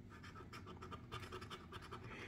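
Plastic coin-shaped scratcher rubbing the coating off a scratch-off lottery ticket in rapid, faint scraping strokes.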